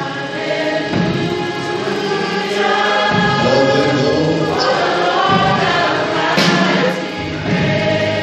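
Church choir singing a gospel song, led by a soloist singing into a microphone. A sharp hit rings out about six and a half seconds in.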